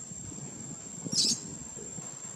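Steady high-pitched insect drone, with one short, sharp, high chirp a little over a second in.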